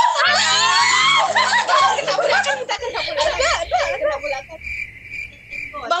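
Several young women squealing, shouting and laughing excitedly at once over a video-chat connection. A short run of low music notes plays beneath them for the first two or three seconds. A steady high-pitched tone sounds through the second half.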